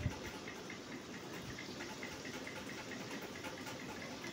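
A spoon stirring a milk-and-egg batter in a glass bowl: faint, steady liquid swishing.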